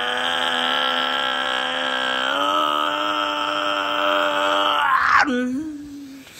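A man's voice holding one long, unaccompanied sung note for about five seconds, stepping up slightly in pitch about two seconds in. The note then breaks off into a short, quieter, lower hum.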